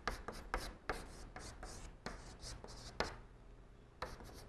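Chalk writing on a blackboard: a quick irregular run of taps and scratchy strokes as characters are written, with the sharpest tap about three seconds in.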